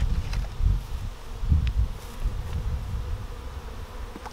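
Honeybees buzzing steadily around open hives in an apiary, over a louder low rumble.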